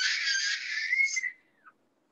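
A young child's high-pitched squeal heard over a video-call microphone, lasting about a second and a half, its pitch rising and then falling off as it ends.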